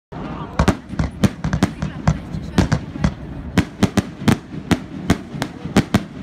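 Fireworks bursting overhead: a rapid, irregular string of sharp bangs, about four a second, that stops at the end.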